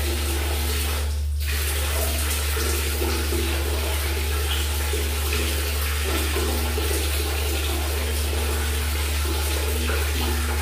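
Water running steadily from a tap in a small tiled bathroom while a person washes their face, over a steady low hum. The running-water noise drops out briefly about a second in.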